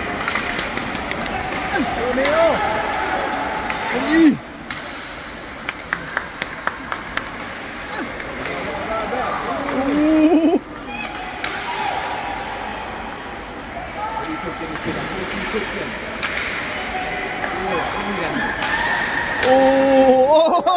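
Voices calling out across an indoor ice rink during a youth hockey game, over a steady arena hum. A run of sharp clacks of sticks and puck on the ice comes a few seconds in.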